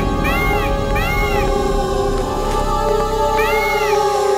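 A cartoon peacock crying out in short rising-and-falling, cat-like calls: several in the first second and a half, then one more near the end. Background music with long held notes plays under the calls.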